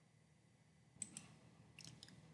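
Faint computer mouse clicks over near silence: two quick clicks about a second in and two more near the end, as the on-screen page is changed.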